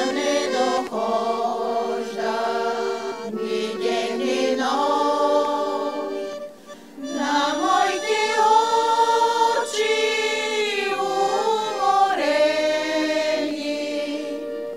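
A women's vocal group sings a Bulgarian old urban song in long held phrases, with short breaks between them.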